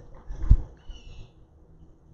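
A single low thump about half a second in, the handheld microphone being bumped during a pause in speech, followed by faint high tones.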